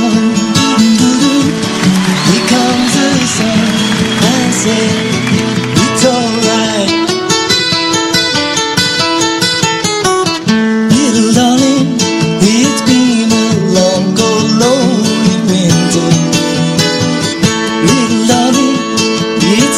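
Acoustic guitars playing a bluegrass tune, with quick picked runs of notes.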